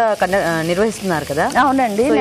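A woman talking over a pan sizzling on the stove as its contents are stirred; the voice is the loudest sound, with the frying sizzle beneath it.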